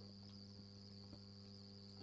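Near silence: only a faint, steady hum and a high-pitched whine from the audio line.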